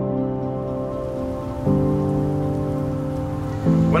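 Heavy rain falling in a steady hiss, fading in over the first second, under slow sustained music chords that change about every two seconds.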